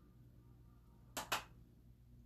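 Two quick, sharp taps a little past the middle, a makeup brush knocked against a pressed eyeshadow palette to shake off excess powder.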